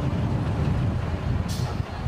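Military vehicle engine running with road noise while driving in a convoy, a steady low rumble. A sudden hiss breaks in about one and a half seconds in.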